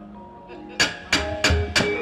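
Wayang kulit dalang's percussion: faint ringing gamelan tones, then about a second in a run of sharp clacks, about three a second, on the kepyak (metal plates hung on the puppet chest) marking the puppet's movement. A low drum thud sounds under the clacks.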